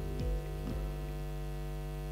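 Steady electrical mains hum. The last notes of the background music die away within the first second.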